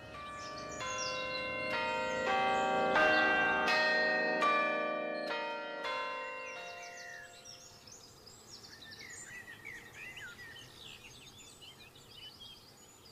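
A set of church bells rung one after another in quick succession for about six seconds, each strike ringing on, then dying away. Birds singing after the bells fade.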